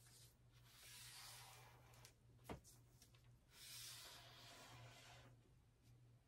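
Faint strokes of a felt-tip marker drawn across kraft paper while tracing a pattern edge: two drawing strokes of about two seconds each, with a small click between them.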